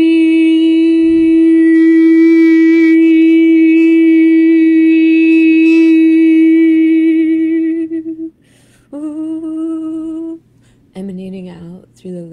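A woman's voice toning one long, steady held note for about eight seconds, then, after a breath, a second shorter held note just below it, and near the end a lower, wavering vocal sound.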